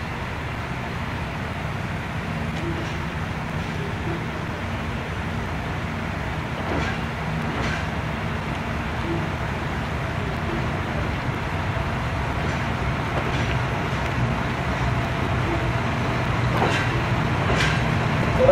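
KiHa 183 series diesel multiple unit drawing slowly into a station, its diesel engines running with a steady low rumble that grows gradually louder as the train nears. A few brief sharp sounds come through over it, a pair about seven seconds in and another pair near the end.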